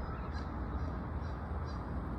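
Outdoor ambience: a steady low rumble of wind on the phone's microphone, with a few faint bird calls.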